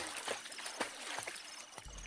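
Water splashing and dripping as a cartoon frog climbs out of a pond: a soft, irregular sloshing with small drips.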